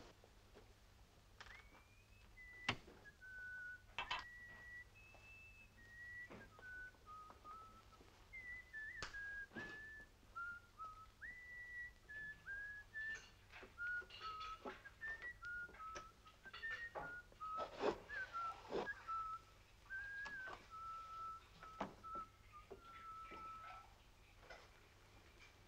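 A man whistling a slow, wandering tune of single held notes, some slid into, with scattered clicks and knocks among them.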